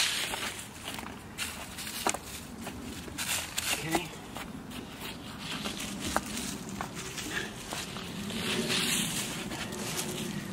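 Loose soil being scraped and patted by hand around the base of a buried plastic cone, with rustling and scattered light clicks. Near the end there is shuffling over dry leaves.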